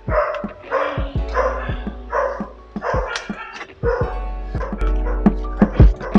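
Background music with plucked guitar, over which a dog barks repeatedly, about once every 0.7 s, during the first half.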